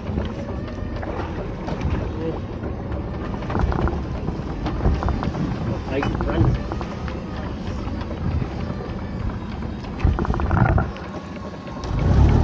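Small fishing boat's engine running with a steady low rumble, with knocks from pot-handling gear and indistinct voices.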